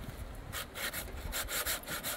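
Hand saw cutting through a dry wooden branch, with rasping strokes starting about half a second in and repeating about three times a second.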